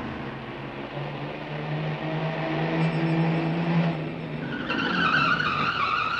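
A van's engine approaching, its note rising and growing louder, then a high squeal as it pulls up and stops near the end.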